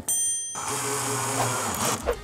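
A brief bright ding, then a cordless drill-driver whirring at a steady pitch for about a second as it drives a screw into the pine boards.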